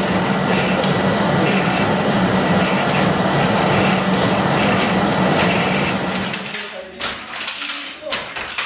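Silk-reeling machine running with a steady hum and a soft rhythmic swish about once a second, as filaments are drawn off cocoons soaking in water. Near the end the hum fades and a few sharp clicks follow.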